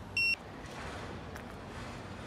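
Handheld drone detector's alarm giving one short high beep just after the start, the sign that it has detected a DJI Mavic-series drone. After the beep there is a steady low background noise.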